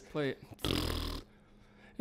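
A man's breath drawn sharply into a close microphone, a noisy rush with a deep rumble lasting about half a second, in a pause between phrases.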